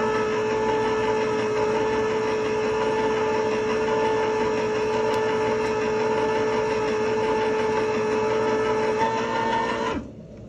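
Hamilton Beach Smooth Touch electric can opener's motor running steadily with a clear hum as it turns a can and cuts it open along the side. The hum lifts slightly in pitch about nine seconds in, just before the motor stops at the end.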